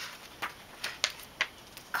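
Pages of a thin paperback children's book being turned and handled: four or five short, crisp paper rustles and clicks.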